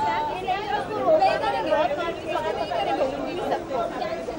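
Several people talking over one another: background chatter of voices with no clear words.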